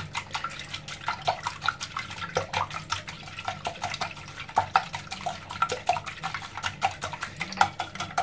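Wire whisk beating raw eggs in a glass bowl: rapid, irregular clicks of the whisk against the glass, with the wet slapping of the liquid egg.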